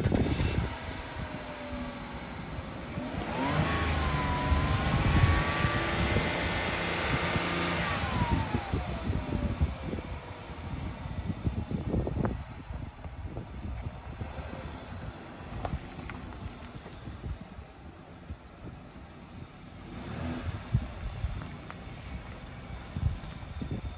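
2004 Ford Escape Limited's engine revved once while parked: the pitch climbs a few seconds in, holds for about four seconds, then falls back to idle. Wind buffets the microphone.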